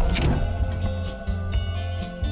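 Car colliding with a taxi: a short burst of crash noise in the first half-second, the tail of a louder impact just before. Background music runs on under it.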